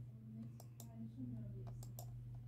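A handful of sharp, unevenly spaced clicks from a laptop's controls as it is worked, over a faint steady hum.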